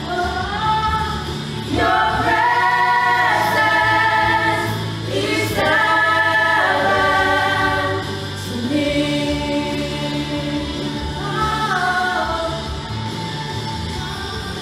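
A church praise team of women's and a man's voices singing a gospel song into microphones in harmony, with long held notes over a low instrumental backing.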